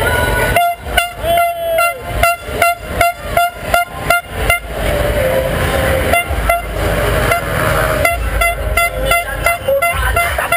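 Vehicle horns honking in quick repeated short blasts, about three a second, in two runs: one from just under a second in to almost five seconds, another from about six seconds to the end. This is celebratory honking in a car motorcade, heard over a steady low traffic rumble.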